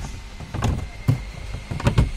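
A few sharp, short clicks and knocks from plastic dashboard parts and wiring-harness connectors being handled behind a car's centre console, over a low rumble.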